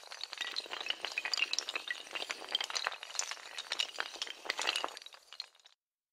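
Sound effect of many small tiles toppling like dominoes: a rapid, dense cascade of clinking, clattering clicks that cuts off abruptly shortly before the end.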